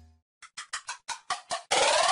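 Logo-intro sound effects: a low hum dies away, then a run of about eight short ticks, roughly six a second. Near the end a loud, full swell breaks in and leads into electronic music with a beat.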